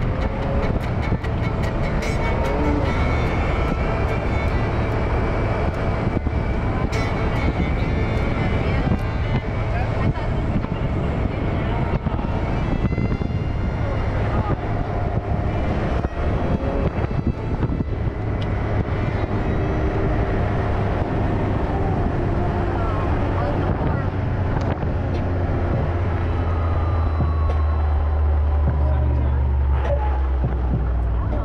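Can-Am Maverick X3 side-by-side running steadily along a gravel road, its engine drone mixed with the crunch and rattle of tyres on gravel. The low engine sound grows louder in the last few seconds.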